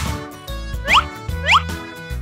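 Cartoon background music with two short rising whistle-like sound effects, about a second in and again half a second later. They mark a spray bottle and a bandage roll being whisked out of a first-aid box.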